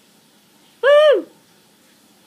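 A woman's short, high whimper of dismay, one pitched whine about a second in that rises and falls over about half a second.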